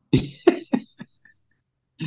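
A man's short laugh: four quick breathy bursts, each weaker than the last, over about a second.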